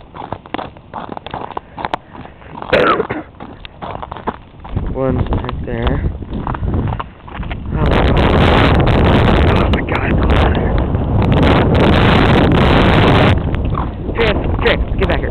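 Footsteps crunching on an icy, snow-crusted surface, then from about eight seconds in a loud rush of wind buffeting the microphone that lasts about five seconds and cuts off near the end.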